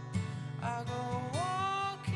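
Live solo acoustic performance: acoustic guitar picked in a steady repeating pattern, with a held sung note that slides up in pitch near the end.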